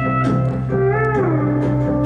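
Live country-rock band playing an instrumental passage: strummed acoustic guitar and bass under a steel guitar melody that slides up and then back down in the middle.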